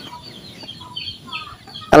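Chicken drumsticks frying in a shallow pan of oil: a quiet sizzle with small, irregular pops scattered through it.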